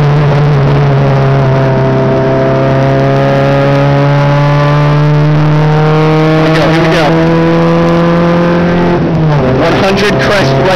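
Volkswagen Mk2 Jetta hillclimb car's engine heard from inside the cabin, pulling hard with its pitch rising slowly, then dropping about nine seconds in. A brief knock comes around seven seconds in.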